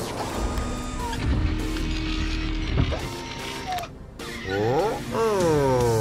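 Cartoon soundtrack: background music under whirring, clicking machine sound effects, then a character's wavering "oh, oh" from about four and a half seconds in.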